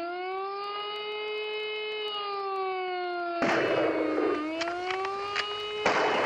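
A siren wailing: its pitch rises, holds, then slowly sinks. About three and a half seconds in, a loud rush of noise breaks over it, and the wail dips and climbs again before another burst of noise near the end.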